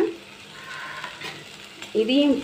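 Faint, steady sizzle of ivy gourd frying in spiced masala in a steel pan.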